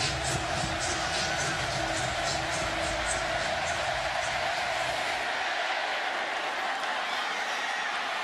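Large stadium crowd noise at a football kickoff, a steady roar of cheering and yelling. Music plays under it for the first few seconds and fades out about halfway through.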